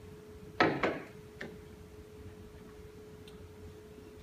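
A few sharp clicks and knocks at a lectern. Two come close together a little over half a second in, a lighter one follows shortly after, and a faint one comes near the end, as the presentation slide is advanced. A steady faint hum runs underneath.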